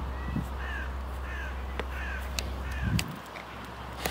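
A bird calling four times: short, falling notes repeated about two-thirds of a second apart.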